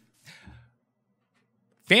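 A short, faint breathy exhale like a sigh right after speech, then dead silence, before a man starts talking just before the end.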